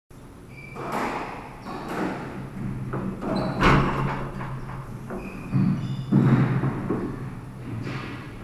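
Squash rally: a rubber squash ball being struck by rackets and smacking off the court walls, several sharp hits with echo, the loudest a little under four seconds in. Between the hits, low thuds and brief shoe squeaks on the wooden court floor.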